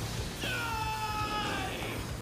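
An anime character's drawn-out, high-pitched shout, about a second and a half long, falling slowly in pitch.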